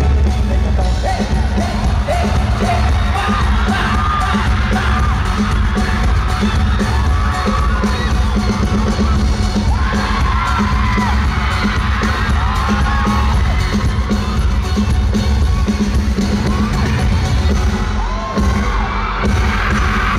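Loud live pop music with heavy bass played through a concert sound system, with fans screaming and cheering over it.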